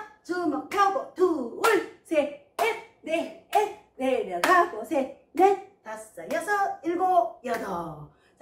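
A woman counting the exercise beats aloud in Korean, one short word after another, with sharp hand claps roughly once a second.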